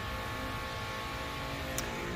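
Steady background hum of a repair shop, with a single faint click near the end.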